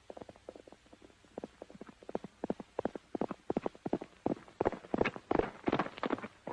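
A horse galloping on a dirt track toward the listener, its quick hoofbeats growing steadily louder as it approaches and loudest near the end.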